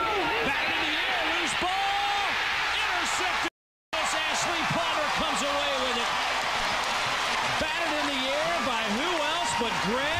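Large stadium crowd cheering and yelling, a dense roar of many voices at once, broken by a short dropout to silence about three and a half seconds in.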